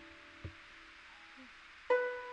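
Guzheng (Chinese zither) strings being plucked. A lower note rings on and fades, a faint tap comes about half a second in, and a new, higher note is plucked sharply near the end and rings.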